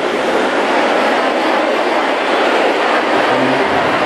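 Steady crowd noise from a large audience responding all at once to a show of hands.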